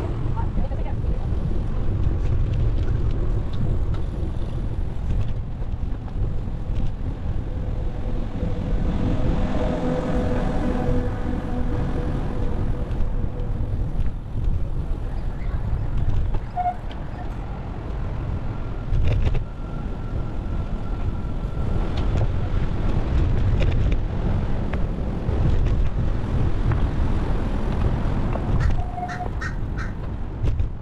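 Wind buffeting the microphone of a camera on a moving bicycle: a steady low rumble. Voices of people nearby rise over it for a few seconds about a third of the way in.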